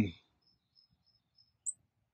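Quiet outdoor pause with faint, high, short bird chirps, one brief chirp a little before the end standing out above the rest.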